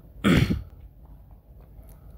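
A man clears his throat once, a short loud burst near the start, followed by faint room noise.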